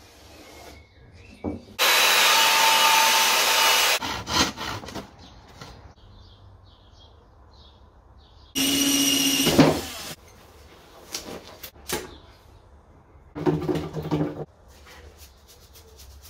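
A power tool run in three short bursts: the first about two seconds long, the next two a second or so each. Light knocks and taps of handling come between the bursts.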